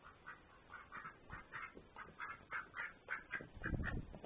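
Duck calling in a rapid string of short quacks, about three a second, growing louder as it comes right up close. A few low thumps near the end.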